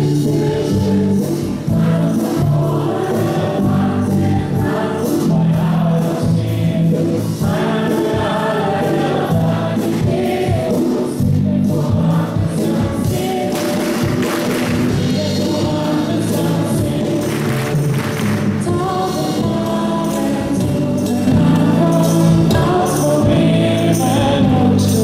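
A large group singing a song together with a live band, with a steady beat throughout.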